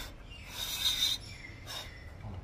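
A person blowing short breaths onto a freshly cleaned mass airflow sensor to dry off the sensor cleaner: three hissy puffs, the longest lasting about half a second just before the middle.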